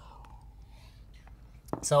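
Mostly a quiet pause in conversation, with faint room noise and a couple of faint clicks. A man starts speaking again near the end.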